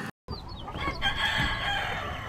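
Chicken sounds: short clucks, then a rooster crowing from about a second in.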